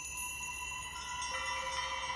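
Film background score of high, sustained chime-like ringing tones, with further lower tones joining about a second in.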